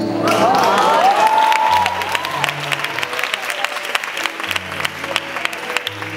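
Audience clapping steadily, with whistles gliding up and down in the first two seconds. Slow, sustained low notes of the song's instrumental intro come in about two seconds in, break off, and return near the end.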